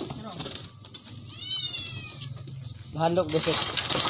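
Young dog whining once: a high cry that arches and then falls in pitch, about a second and a half in.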